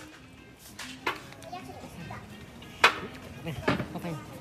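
Background voices, children's among them, with a few sharp knocks, the loudest near three seconds in, and a short laugh at the very end.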